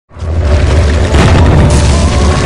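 Loud cinematic boom with a deep held rumble, the sound effect for a stone wall smashing into rubble, with a second hit about a second in and music coming in under it.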